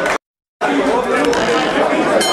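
Indistinct chatter of many voices from spectators in a boxing gym. The sound cuts out entirely for under half a second near the start.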